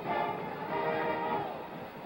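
A band playing in the stadium: held musical notes carried over the crowd, easing off a little near the end.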